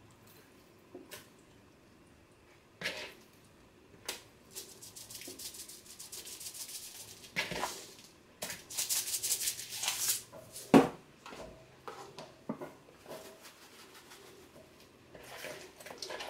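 Seasoning shaker shaken over raw fish fillets, the grains rattling out in two runs of quick shaking a few seconds each. A few light knocks of handling fall in between, the sharpest about two-thirds of the way through.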